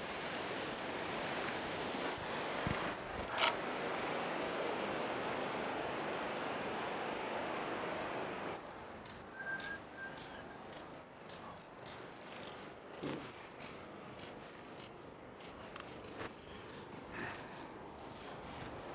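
Ocean surf washing onto a sandy beach, a steady rush that drops suddenly to a quieter wash about eight and a half seconds in, with a few small clicks over it.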